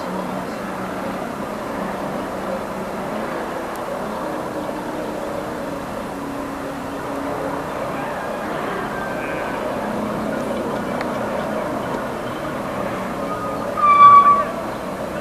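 Steady outdoor background noise on a home-camcorder soundtrack. Near the end comes a short, loud, high-pitched cry.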